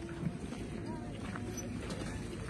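Low, steady rumble of wind buffeting the microphone, with faint voices in the background.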